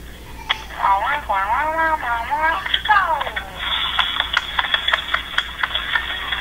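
A person's voice rising and falling in pitch with no clear words, followed in the second half by a quick run of clicks.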